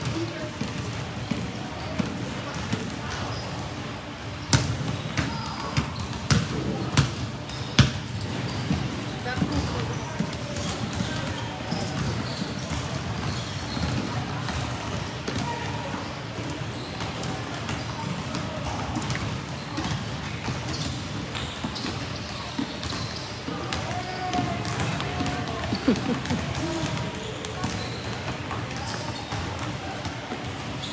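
Basketballs bouncing on a hard court floor, several being dribbled at once, with the loudest bounces clustered about five to eight seconds in. Voices chatter throughout.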